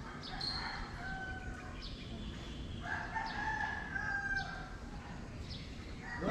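A rooster crowing twice, each crow a long drawn-out call.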